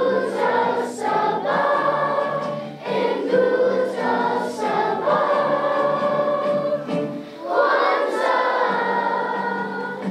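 Elementary school children's choir singing a song in long held phrases, with a couple of brief pauses between phrases.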